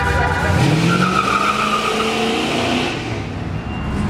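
Car engine revving, its pitch climbing as the car accelerates away, over a steady low exhaust rumble.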